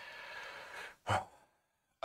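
A man sighing: a soft, breathy exhale lasting about a second, then a short quick breath just after.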